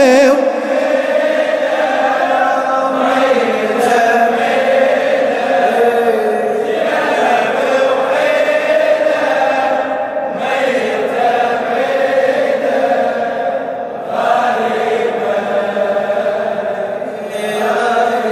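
Male voices chanting a Shia mourning latmiyya refrain in unison, the reciter with the congregation of men, in long sustained phrases that break every three to four seconds.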